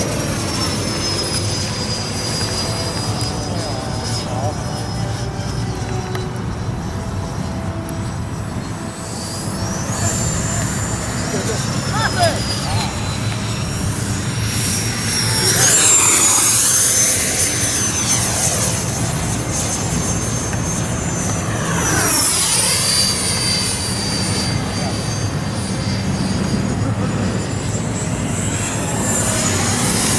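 Radio-controlled scale model F-16 jet flying overhead, its engine a steady high-pitched whine. It passes close and loudest about sixteen seconds in, and again around twenty-two seconds, where the whine drops in pitch as it goes by.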